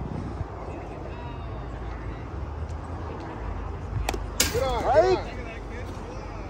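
A baseball pitch smacking into the catcher's mitt with a sharp pop about four seconds in, just after a lighter click, followed at once by a short shouted call from the field.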